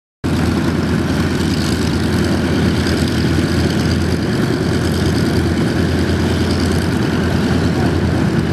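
Twin radial piston engines of a PBY Catalina amphibian running steadily on the ground, propellers turning, a loud even drone that cuts in abruptly a moment in.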